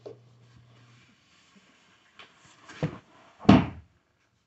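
Light handling rustle, then two dull thumps in the last second and a half, the second the louder, as the bonded-leather seat of an office chair being assembled is shifted and set down.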